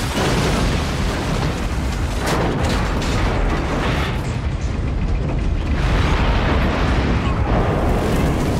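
Film sound effects of a starship crash-landing: a continuous, loud, heavy rumble and crashing din, with music under it.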